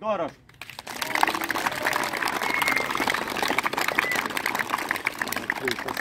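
Applause from a crowd of spectators and lined-up players, many hands clapping at once, starting about a second in and holding steady.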